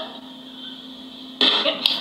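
Low steady hum, then about one and a half seconds in a woman's sudden loud vocal outburst, a cry or yelp, just before she shouts at her partner to stop.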